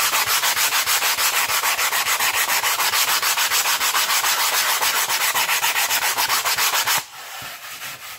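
Foam wing core being hand-sanded with coarse sandpaper of about 60 grit, in fast, even back-and-forth strokes, several a second, rubbed a little hard. The sanding stops about seven seconds in.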